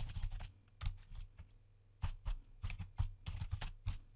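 Typing on a computer keyboard: runs of quick keystrokes with a short pause about one and a half seconds in.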